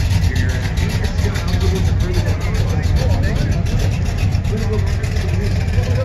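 A 1969 Dodge Charger R/T's 375-horsepower 440 big-block V8 running at low speed with a steady, deep exhaust note as the car pulls away. Voices talk in the background.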